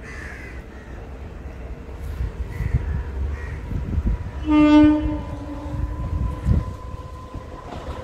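Unseen approaching train: a low rumble grows louder, and about halfway through the locomotive gives one short horn blast.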